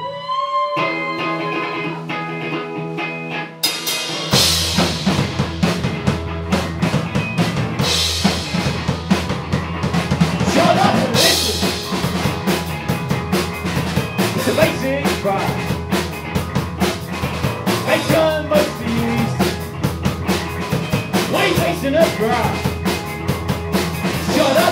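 Live rock band of electric guitar, bass guitar and drum kit playing the instrumental opening of a song: the guitar alone for the first few seconds, then drums and bass come in about four seconds in and the full band plays on.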